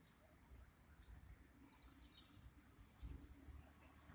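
Near silence: faint, short, high bird chirps, with a low rumble that swells about three seconds in.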